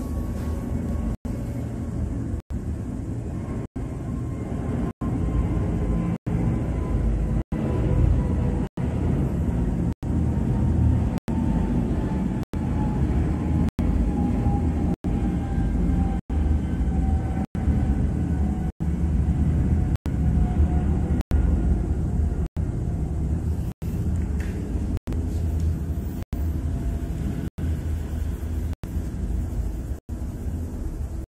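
A steady low rumble with a faint whine that slowly falls in pitch, broken by brief silent gaps a little under once a second and a half.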